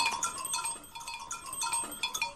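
Small bells tinkling in quick, irregular strikes, each one ringing on briefly.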